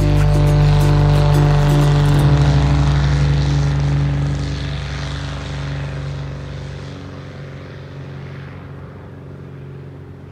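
Light propeller aircraft's engine running loud and steady, then fading away over the second half as the plane moves off.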